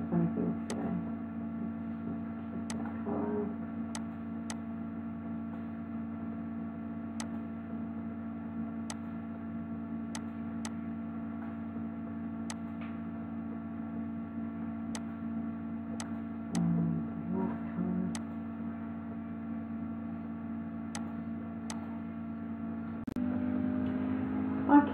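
Computer mouse clicking now and then, about fifteen to twenty short sharp clicks at irregular intervals, over a steady electrical hum.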